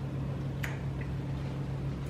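A single short wet smack of lips and tongue as icing is licked off a finger, with a fainter tick a moment later, over a steady low hum.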